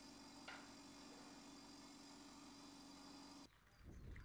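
Near silence: a faint steady room hum with a low tone and one faint tick, cutting off about three and a half seconds in.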